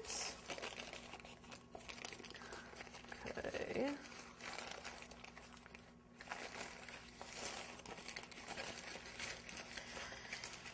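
Parchment paper crinkling and rustling in irregular crackles as hands crumple and press it down over pie dough in a pan, then begin lifting it off.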